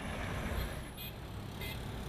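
Town street traffic: a steady rumble of vehicle engines and road noise, with two brief high-pitched sounds, one about a second in and one near the end.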